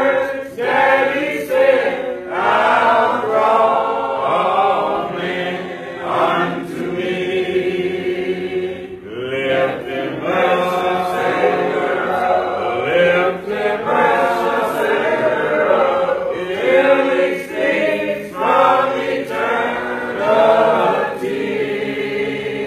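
A church congregation singing a hymn a cappella, many voices together without instruments, in sung phrases with short breaks between them.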